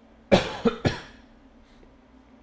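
A man coughs three times in quick succession into his raised fist, the first cough the loudest.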